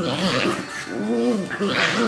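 Two dogs play-fighting, vocalising as they wrestle, with one pitched call rising then falling about a second in.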